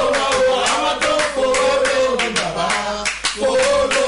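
A man singing a worship chorus over a steady beat of hand-claps, a few claps a second.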